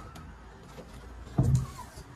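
A single short, low thump about a second and a half in, over a faint background hiss.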